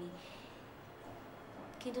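Speech only: a woman's voice trails off just after the start, then a pause with faint room hiss, and talking resumes at the very end.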